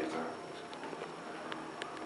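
KONE elevator cab in motion: a faint, steady running sound with a few light clicks.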